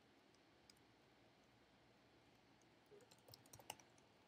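Near silence broken by faint computer keyboard key clicks: a single click a little under a second in, then a quick run of keystrokes in the last second.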